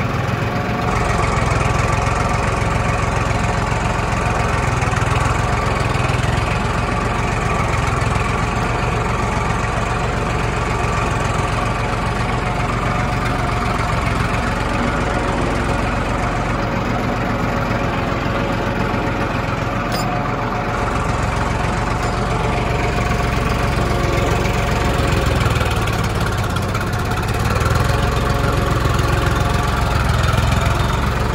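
Farmtrac 60 four-wheel-drive tractor's diesel engine running steadily under load as it pulls a rear-mounted implement through dry soil, growing a little louder near the end.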